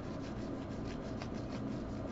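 Stack of 2020 Bowman baseball cards flipped through by hand, the cards sliding and rubbing against one another in a run of soft, irregular scuffs several times a second.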